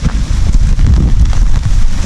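Wind buffeting the microphone in a loud, uneven low rumble, mixed with handling noise as an umbrella is put up close to it, over light rain.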